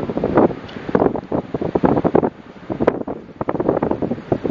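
Wind buffeting the microphone in irregular gusts.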